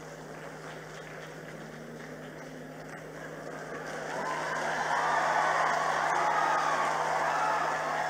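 Audience applause that builds up about halfway through and then holds at its loudest, over a steady low hum.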